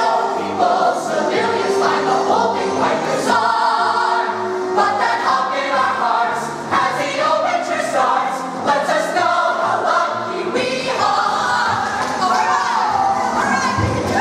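A mixed group of teenage voices sings a Broadway show tune together over a musical accompaniment with a steady beat.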